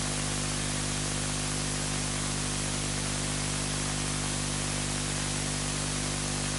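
Steady static hiss with a low, even electrical hum underneath, unchanging throughout.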